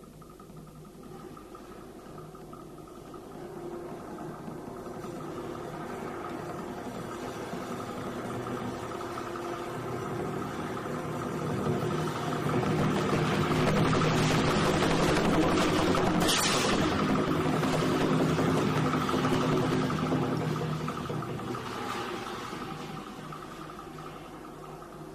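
Chinese metal percussion, a large gong with cymbals, ringing in one long sustained swell. It grows steadily louder for over ten seconds, peaks with a brief bright splash about sixteen seconds in, then fades.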